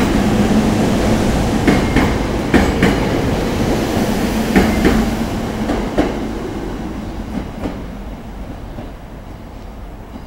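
SEPTA Silverliner IV electric multiple-unit train passing close by, its wheels clacking over rail joints in a scatter of sharp clicks. The sound fades steadily over the last few seconds as the train pulls away.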